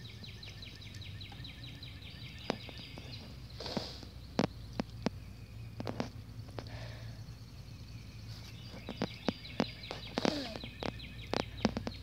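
Outdoor ambience: a fast run of evenly repeated high chirps, fading out after about three seconds and returning near the end, with scattered sharp clicks in between.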